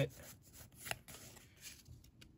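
Pokémon trading cards being slid one behind another in the hands, a faint rustle of card stock with a light tick about a second in.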